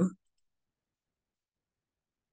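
Two faint, short clicks in the first half second, then silence.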